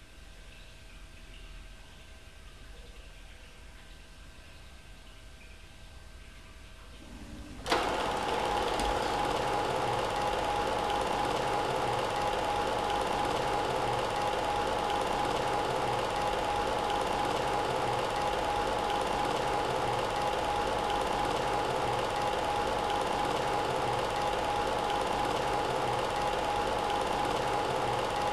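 Film projector running with a steady mechanical rattle, starting abruptly about eight seconds in after a faint hum.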